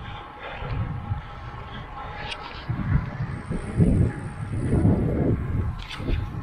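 Wind buffeting the microphone of a camera on a moving road bike, in irregular low gusts over faint road noise, with a short click about two and a half seconds in.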